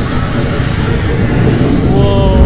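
A loud, steady low rumble with a rushing noise as the ride boat passes the gas flame and water effects, with a voice faintly under it.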